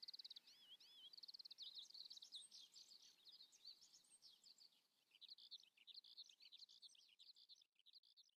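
Faint birdsong, several small birds giving quick high chirps and trills, thinning out in the middle and busier again toward the end, then stopping abruptly just before the end.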